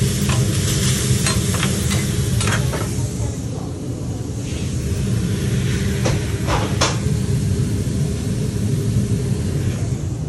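Chicken sizzling on a flat-top griddle while a metal spatula chops and scrapes it against the steel in quick strokes, busiest in the first three seconds, with two sharper scrapes about six and seven seconds in. A steady low hum runs underneath.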